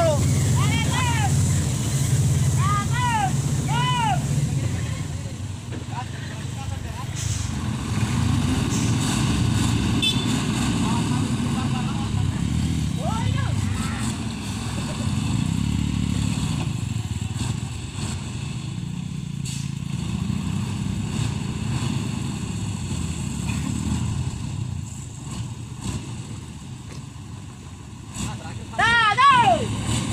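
Men shouting calls over a steady low engine rumble, loudest in the middle as a motorcycle rides past on the muddy road. The loudest shouts come in the first few seconds and again near the end.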